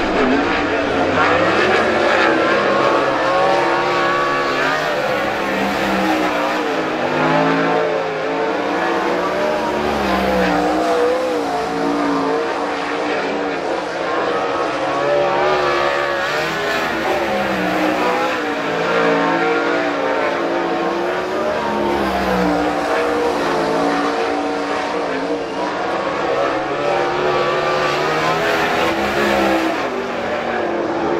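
Single winged sprintcar's V8 engine lapping a dirt oval on a time-trial run, its pitch rising and falling again and again as the driver gets on and off the throttle around the track.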